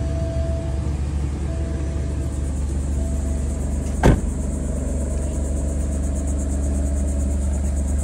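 2022 Alfa Romeo Stelvio idling with a steady low exhaust rumble, and a single sharp thump about halfway through.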